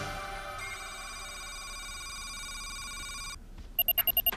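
Soundtrack music fades out into a steady, held electronic tone that lasts about three seconds and cuts off sharply. Just before the end, a fast run of electronic beeps starts: the computer's sound effect as a file record comes up on screen.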